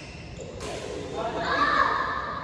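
One sharp knock a little past a quarter of the way in, ringing briefly in a large echoing sports hall. Then a person's voice calls out near the end and is the loudest sound.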